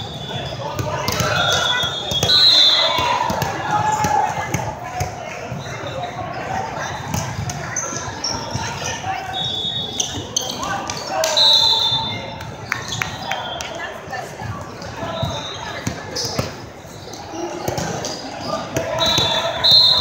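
Indoor volleyball being played: the ball is hit and bounces on the court, with several short high-pitched squeaks. Players' and spectators' voices echo through a large hall.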